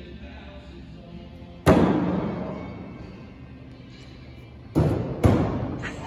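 Thrown hatchets striking wooden plank targets: three hard thuds, the loudest about two seconds in and two more close together near the end, each followed by a short echo.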